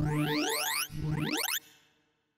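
Sorting-visualizer tones: synthesized beeps whose pitch follows the values being compared and written, running in quick upward sweeps as an iterative bitonic sort makes its last passes over a nearly sorted array of 1,024 numbers. Two rising sweeps, then the sound stops about a second and a half in and dies away as the sort finishes.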